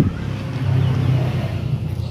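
Steady low hum of a motor vehicle engine running, growing a little louder about half a second in.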